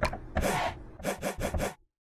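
Drum samples from a hip-hop kit in the iZotope BreakTweaker drum machine plugin, played one at a time from a MIDI keyboard: a run of short, noisy hits that cuts off abruptly near the end.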